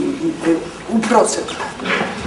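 Speech only: an elderly woman speaking on stage in short phrases with pauses, her pitch sliding up and down.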